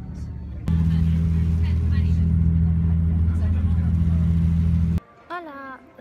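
Loud, steady low hum and rumble of a moving train, heard from inside the carriage. It starts abruptly within the first second and cuts off suddenly near the end.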